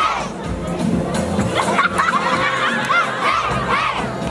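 Crowd of young children shouting and cheering together, many high voices overlapping without a break.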